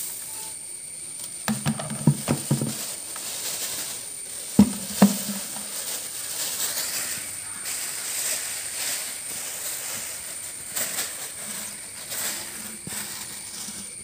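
Black plastic bags rustling and plastic paint buckets knocking as they are handled, with two sharp knocks about four and a half and five seconds in, over a steady high hiss.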